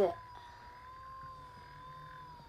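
A thin, steady, high-pitched whine with a slight waver, over a faint low hum, from an electric massager running against the neck.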